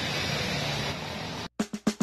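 Steady street traffic noise, cut off suddenly about a second and a half in as background music starts with a few quick guitar strums.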